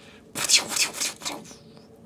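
Rustling, rubbing handling noise that starts about a third of a second in and lasts about a second: a hand and sleeve brushing close to the microphone while picking up a small plastic toy gun.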